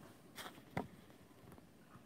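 Quiet room tone broken by handling noise: a brief rustle about half a second in, then one sharp click just after.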